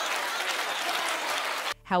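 Studio audience applauding, cutting off abruptly near the end.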